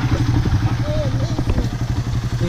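Suzuki Raider 150's single-cylinder four-stroke engine idling steadily with an even, rapid pulse.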